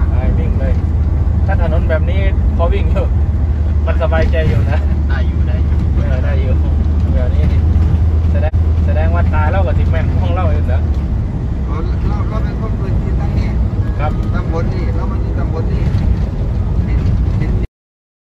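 Steady low rumble of a van's engine and road noise heard from inside the cabin, with people talking over it. The rumble eases about eleven seconds in, and the sound cuts off abruptly near the end.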